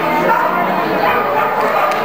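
Dog barking, over a background of voices.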